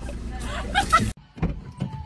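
Steady low rumble of a car engine idling, heard from inside the cabin. It cuts off abruptly about a second in.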